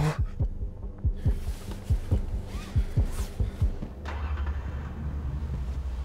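Film sound design: low, heartbeat-like thuds, about three a second, with a few airy whooshes. About four seconds in, a steady low drone comes in under them.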